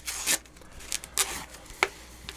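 Paper towel wrapped around a beer can rustling and tearing in a few short bursts as it is peeled away by hand, with a sharp tick near the end.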